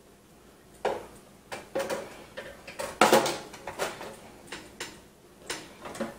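Irregular clicks and knocks of parts being handled against a metal PC case while a hard drive is lined up with its mounting holes, the loudest knock about three seconds in.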